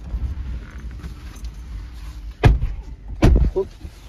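Tesla Model 3 doors shutting, heard from inside the cabin: two loud thuds, the first about two and a half seconds in and the second under a second later.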